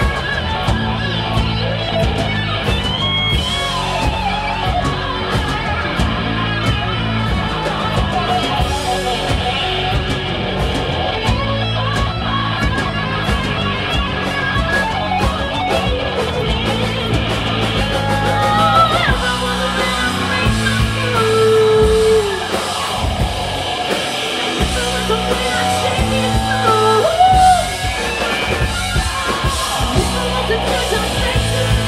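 Live rock band playing an instrumental break: an electric guitar lead with bending, sliding notes over bass and a steady drum kit beat.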